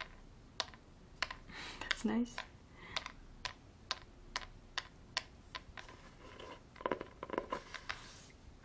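Fingers tapping on the textured cover of a hardcover book: sharp, separate taps about two a second, bunching into a quick flurry near the end.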